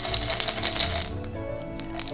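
Coins rattling in a small glass jar for about the first second, over soft background music.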